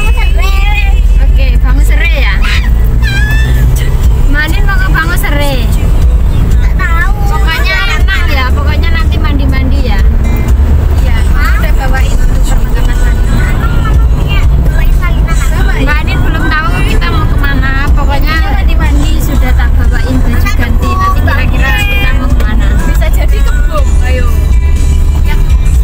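Steady low rumble of a car driving, heard inside its cabin, under voices and music.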